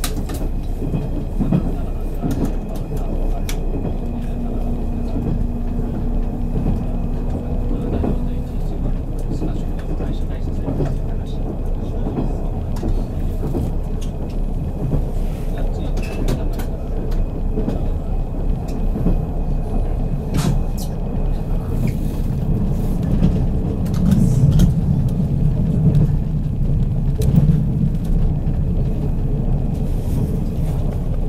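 Running noise of a JR 183 series electric train heard from inside the passenger car: a steady low rumble with scattered sharp clicks from the wheels and track, and a steady hum for a few seconds near the start.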